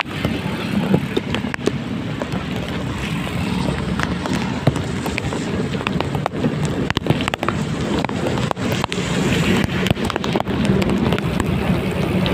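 A vehicle riding along a rain-soaked road: a steady low engine drone under road and wind noise, with many small clicks of raindrops hitting the microphone.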